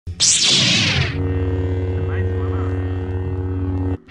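Lightsaber sound effect: a loud whoosh of ignition lasting about a second, then a steady electric hum that cuts off suddenly at the end.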